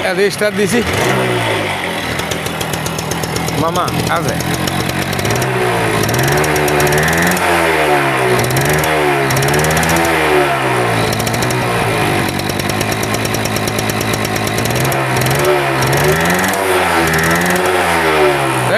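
Suzuki AX100 motorcycle's 98 cc two-stroke single-cylinder engine running, then revved up and down on the throttle again and again, its pitch rising and falling about once a second.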